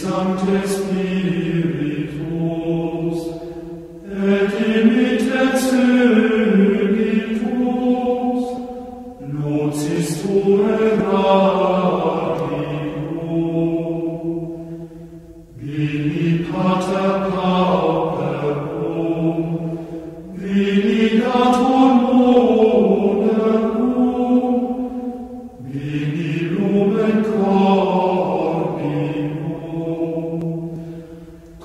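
Christian devotional chant, sung by voice in a slow repeated phrase. Six phrases of about five seconds each, each followed by a brief pause for breath.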